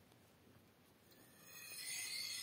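Steel knife blade drawn along a Victorinox 7.8423 oval, semi-fine-cut honing steel to hone the edge: one scraping stroke that starts about a second in and swells, after a near-silent first second.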